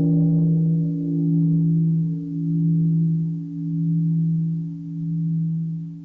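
A large meditation bell rings on after being struck. Its deep hum wavers slowly, about once a second, and fades away near the end.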